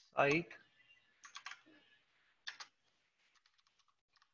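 Computer keyboard typing: several short runs of keystrokes with pauses between them.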